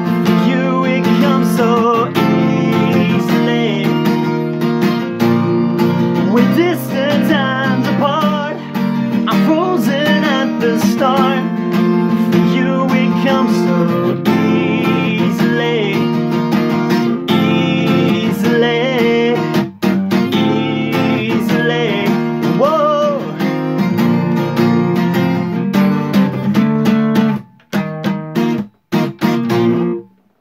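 Acoustic guitar strummed steadily, with a man singing over it. Near the end the playing thins to a few last strums with short gaps as the song finishes.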